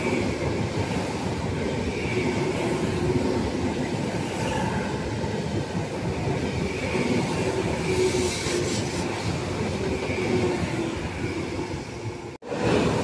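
Frecciarossa 1000 high-speed electric train running past at the platform: a steady rush of wheel-on-rail and running noise with a faint hum, and a short spell of sharper clicking about eight seconds in.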